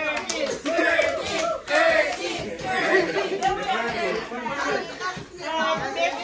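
Several people talking over one another: lively group chatter that continues throughout.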